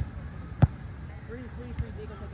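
A volleyball being struck in a passing rally on a sand court: a sharp smack about half a second in and a softer hit near the end.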